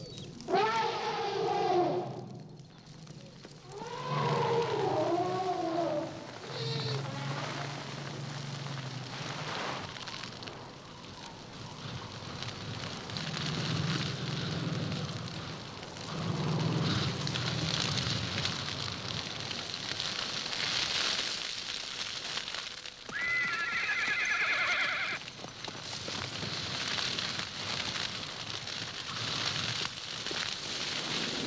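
Elephants calling twice in the first six seconds, with rising-and-falling cries. Then a steady crackling hiss of dry savanna grass burning, with a brief high call about 23 seconds in.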